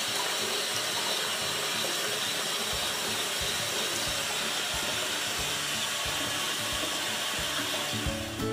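Water running steadily from a bathroom faucet into a sink as it fills.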